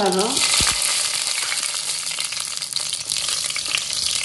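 Mustard seeds and dry red chillies sizzling in hot oil in a stainless-steel pan, the tempering stage of the dish, while a wooden spatula stirs. There is one soft knock about half a second in.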